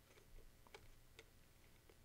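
A few faint, sparse ticks of a small Allen key turning screws down into a battery plate, over near silence.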